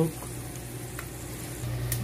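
Whole spices (bay leaves, cinnamon sticks and cumin seeds) sizzling in hot oil in a pan, a steady frying hiss with a low hum beneath and a few faint ticks.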